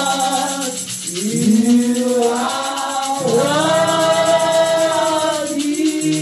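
A woman singing a slow worship song into a microphone, long held notes that glide into pitch, with a hand shaker rattling a steady beat.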